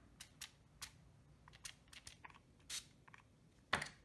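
Small plastic pump spray bottle misting water, a quick, irregular series of faint short spritzes, with a louder one near the end.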